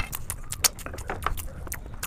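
Close-miked eating sounds: a person chewing and crunching food, with many sharp, irregular crisp clicks and smacks.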